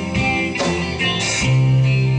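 Live band playing through a PA: electric guitars over bass guitar and drums, with the bass moving to a new, lower note about a second and a half in.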